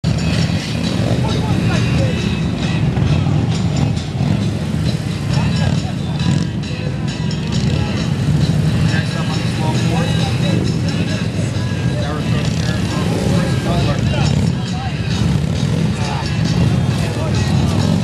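Harley-Davidson Road King police motorcycle's V-twin engine running steadily at low revs while ridden at a crawl. Crowd voices and background music are mixed in.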